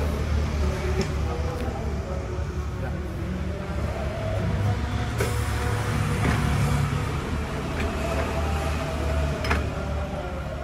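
Motorcycle tyre and rim being handled and worked by hand, with a few sharp knocks, the last as the wheel is set on the tyre changer near the end, over a steady low hum and faint background music.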